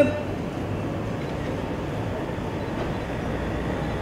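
Steady outdoor street background noise: an even low rumble and hiss with no distinct events.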